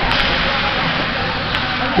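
Steady background noise of an indoor ice hockey game in play: crowd chatter and play on the ice, with no single sound standing out.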